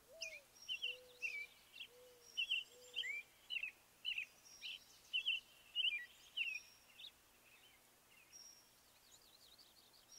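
Faint birdsong: quick chirping calls over a soft background hiss, with four lower short notes in the first three seconds. The calls thin out after about seven seconds.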